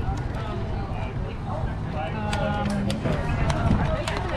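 Indistinct voices of people talking nearby over a steady low rumble, with a few short clicks.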